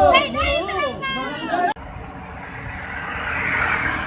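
Women's voices talking and calling out in a crowd, then an abrupt cut to road traffic noise that slowly swells as a vehicle approaches.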